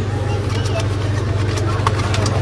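Steady low hum of an open refrigerated display cabinet running. A couple of light ticks come near the end as plastic-wrapped salami packets are touched.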